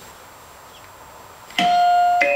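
A doorbell chime strikes a single note about one and a half seconds in and rings on steadily; before it there is only faint background hiss.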